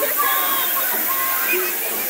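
Fountain water jets spraying and splashing down in a steady rush, with people's voices chattering over it.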